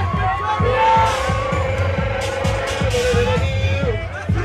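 Loud ballroom dance track with a heavy, steady bass beat. A long held note runs over it from about a second in until near the end.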